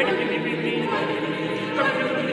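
A mixed a cappella choir of sopranos, altos, tenors and basses singing contemporary choral music, many voice parts sounding together in held, overlapping notes, with a change of chord near the end.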